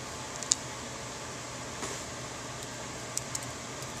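Light clicks from a spiral dread bead with a metal core being handled and set down on a cloth-covered table: one sharp click about half a second in, then a few fainter ticks, over a steady low room hiss.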